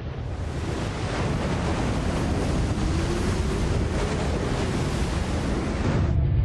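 Loud, steady rush of storm water and wind, a flood sound effect that starts abruptly and builds slightly. A faint tone slides up and back down beneath it in the middle.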